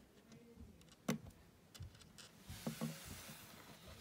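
Faint, sharp plastic clicks of small Lego Dots tiles being pressed onto a silicone bracelet band, the loudest about a second in and a few smaller ones later, with a soft hiss building over the second half.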